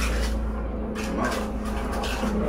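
A hand trowel scraping and smoothing wet self-levelling floor compound in a series of short swishing strokes, over a steady low hum.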